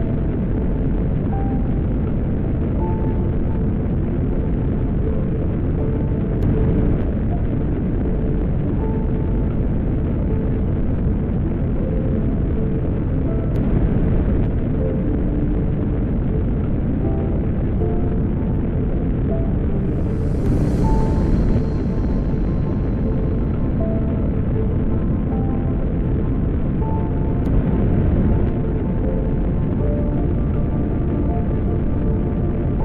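Steady, deep roar of a rocket engine static test firing, the Saturn V S-IC stage's five F-1 engines, with music playing over it. A short hiss rises about twenty seconds in and then fades.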